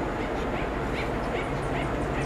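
A run of short, high, rising chirping calls from a small animal, about five a second, over a steady background hum.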